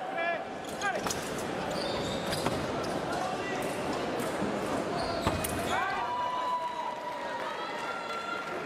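Fencing shoes squeaking on the piste in short, high chirps as the fencers step and lunge, with a longer falling squeak after about five and a half seconds and a few sharp clicks, over the chatter of a large hall.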